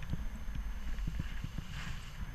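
Airflow buffeting an action camera's microphone in paraglider flight: a steady low rumble broken by irregular soft knocks, several a second, with a brief hiss near the end.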